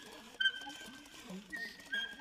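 Saxophone playing soft, thin, high held tones, each starting with a sharp pop: one about half a second in, and two more close together near the end. Faint irregular breathy sounds run beneath, in keeping with the extended techniques of a contemporary solo saxophone piece.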